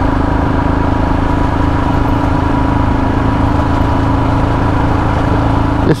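Royal Enfield Himalayan's single-cylinder engine running at a steady speed while the motorcycle is ridden along, a constant, even engine note with road noise underneath.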